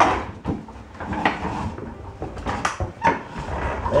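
Toddler's wooden ride-on toy rolling across a hardwood floor: a low rumble from its wheels with several irregular knocks and clunks as it turns.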